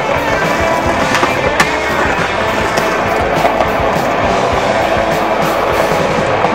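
Music soundtrack over a skateboard rolling on pavement, with a few sharp clacks from the board.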